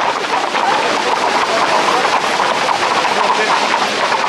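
Dense, steady clatter of many hooves from a pack of Camargue horses and bulls moving together on a paved road, with voices mixed in.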